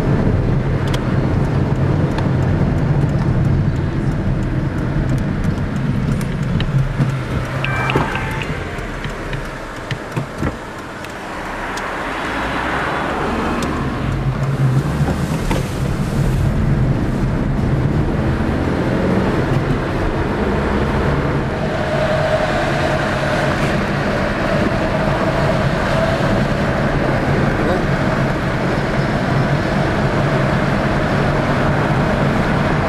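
Car engine and tyre noise heard from inside the cabin while driving. The car eases off about ten seconds in, then speeds up again.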